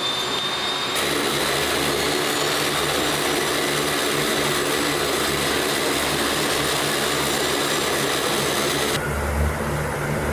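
Lockheed C-130J Super Hercules' Rolls-Royce AE 2100 turboprop engines and six-bladed propellers running on the ground: a loud, steady mix of turbine whine, hiss and low propeller drone. The sound shifts abruptly about a second in, and again near the end, where the hiss thins and the low drone grows stronger.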